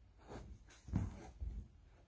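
Quiet breathing and movement noise from a man exercising face-down on a carpeted floor: a few faint breaths and soft low thumps.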